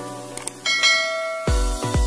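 Subscribe-animation sound effects over music: a short click, then a bright bell ding that rings on briefly. About three quarters of the way in, electronic dance music with heavy bass beats starts.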